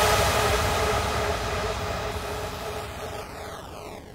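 Outro of a hardstyle track: after the last kick, a wash of noise fades out steadily with a swept effect falling in pitch.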